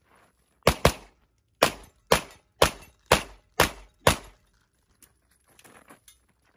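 Pistol shots fired during a practical shooting stage: eight shots, a quick pair followed by six spaced about half a second apart, each with a short echo off the range.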